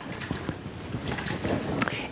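Handling noise from a plastic bottle of liquid held and turned in rubber-gloved hands: an irregular rustling crackle, with one sharp click near the end.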